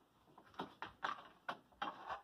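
A drywall T-square bumping and scraping against a corrugated plastic roofing panel as it is set in place, making about half a dozen irregular light clicks and knocks.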